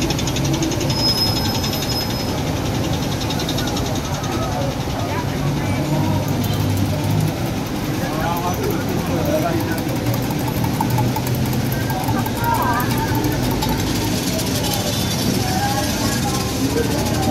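Busy city street: a steady hum of road traffic engines mixed with people's voices and chatter.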